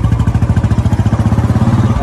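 Motorcycle engine running with a fast, even beat as the bike moves off carrying two riders, revving up slightly near the end.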